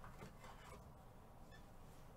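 Near silence with a few faint clicks and rustles of trading cards being handled.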